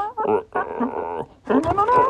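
High-pitched vocal sounds in short bursts, their pitch sliding up and down, with a brief pause near the middle.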